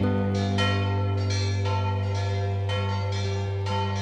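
Church bells ringing, a steady run of strikes about twice a second over a sustained low hum.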